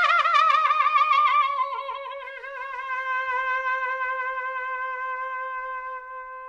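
Trumpet in recorded music holding one long note that slides down in pitch with a wide vibrato, then settles on a steady, plainer tone that grows gradually softer.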